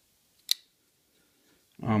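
A single sharp click as a custom flipper folding knife is flicked open and its blade snaps into lock.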